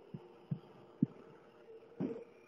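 Three short, dull low thumps in the first second, over a faint steady hum.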